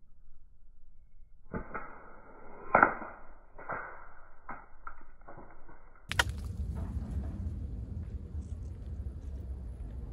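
Slingshot shots at a hanging plastic bottle-cap target: a run of sharp knocks, the loudest about three seconds in, then a single sharp crack about six seconds in. Low wind rumble on the microphone follows the crack.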